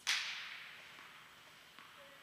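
A single sharp crack that rings out and echoes through a large indoor tennis hall, fading over about a second and a half, followed by a faint tap near the end.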